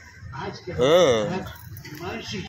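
A small child's voice: one drawn-out wordless call about a second in, rising then falling in pitch.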